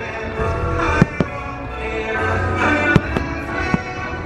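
Aerial fireworks bursting with several sharp bangs, the loudest about a second in and just before the three-second mark, over music playing throughout.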